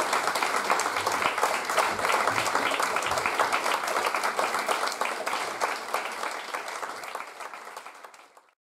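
Audience applauding at the end of a string orchestra piece: many hands clapping in a dense patter that grows fainter toward the end.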